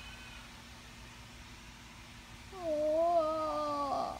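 One long, slightly wavering meow, about a second and a half long, starting past the middle.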